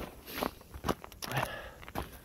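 Footsteps of hiking boots on a woodland trail, a series of short crunches about two a second.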